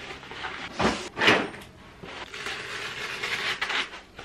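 Cardboard book mailer being torn open by hand: two short rips about a second in, then a longer stretch of tearing and rustling in the second half.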